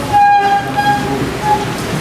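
A loud, steady, high-pitched tone with a horn-like ring, held for under a second, then sounding again briefly about a second and a half in.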